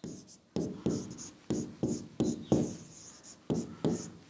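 Pen stylus writing a word by hand on an interactive display's glass screen: a run of short taps and scrapes, two or three a second.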